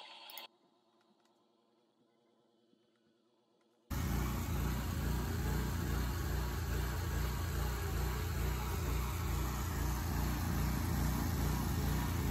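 Near silence for about four seconds, then a spider crane's engine running steadily with an even low throb.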